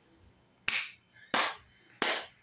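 Two sharp hand claps about two-thirds of a second apart, the start of an even beat kept by hand to rap over.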